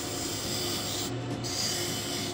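Turning tool cutting into a spinning glued-up oak and maple vase blank on a wood lathe: a steady rasping cut as decorative grooves are turned. The cut eases briefly about a second in, then bites again.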